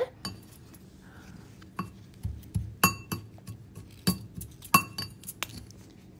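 A metal potato masher crushing biscuit crumbs in a bowl, clinking against the bowl about eight times at uneven intervals. Each clink rings briefly.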